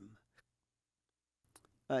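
Speech trails off, then the sound drops to dead silence broken only by a few faint clicks, and speech starts again near the end.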